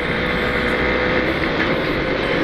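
Two-stroke motorcycle being ridden at steady speed, its engine running evenly under steady wind and road noise.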